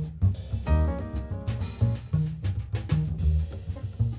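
Jazz piano trio playing live: upright piano chords, plucked double bass and a drum kit with cymbals.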